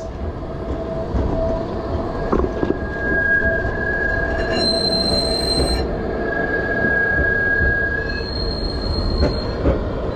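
A tram running close alongside gives off steady high-pitched squealing tones over a low rumble. A higher squeal comes in around the middle and again near the end.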